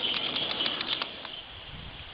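Outdoor ambience: a bird chirping in a quick run of short, high notes for the first second or so, then a low rumble of wind on the microphone.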